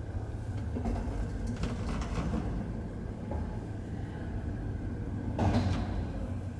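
Old KONE traction elevator car travelling in its shaft: a steady low running hum with a few faint clicks and rattles, then a louder clunk near the end as the car arrives at the landing.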